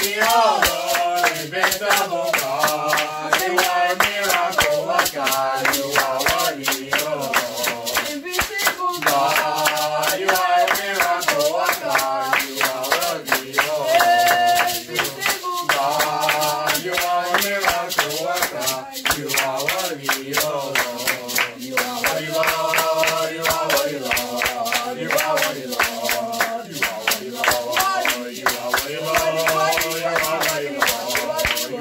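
A man singing a worship song while clapping his hands to a steady beat.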